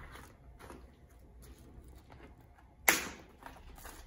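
A plastic zip tie on the bike frame's cardboard packaging cut with hand cutters: one sharp snap about three seconds in, after faint handling noise.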